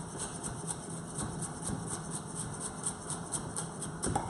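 Chef's knife rapidly chopping red chilli on a wooden chopping board: a quick, even run of light taps as the blade hits the board.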